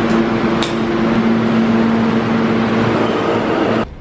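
New York City subway train running beside the platform: a loud rumble with a steady low motor hum, cutting off suddenly near the end.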